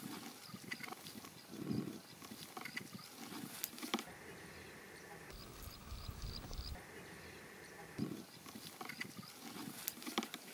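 Small kitchen knife slicing tomatoes on a wooden cutting board: a handful of sharp taps as the blade meets the board, two close together about four seconds in and another about eight seconds in, with softer thuds between. Faint chirping runs in the background.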